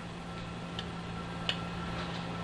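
Steady low background hum with a faint high tone and hiss, broken by two small ticks, the sharper one about a second and a half in.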